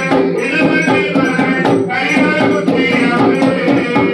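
Kalam Pattu ritual music: men singing a devotional song to drums and sharp, rattling percussion beating steadily, a few strokes a second.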